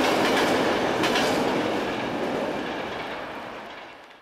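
A tram running past on its rails: a loud, steady rolling rush of steel wheels on track, with a faint click about a second in, dying away toward the end.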